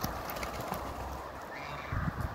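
African geese grazing, their bills plucking and tearing at short grass in small irregular clicks, with a short high call near the end.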